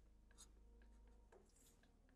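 Faint scratching of a marker pen drawing lines on paper, with a few light ticks of the tip.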